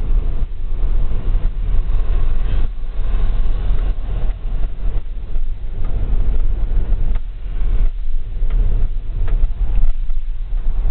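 Engine and road noise heard inside the cab of a moving vehicle: a continuous low rumble with a rough, uneven loudness.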